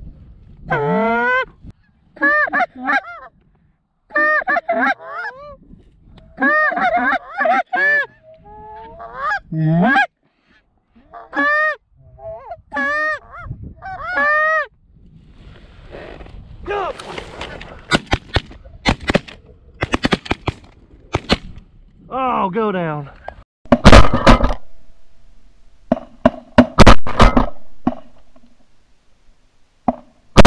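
Canada geese honking and clucking in rapid short calls. In the second half come a string of shotgun blasts, the loudest a little past three-quarters of the way through and several close together near the end.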